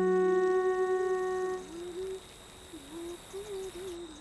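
A sustained held tone fades out about a second and a half in, while a voice hums a soft, wavering melody. Faint steady insect-like chirring sits underneath.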